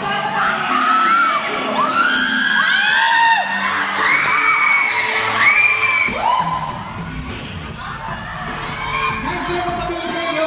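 A young crowd cheering and shrieking, with many high-pitched screams overlapping through the first half, over loud music whose bass grows stronger about six seconds in.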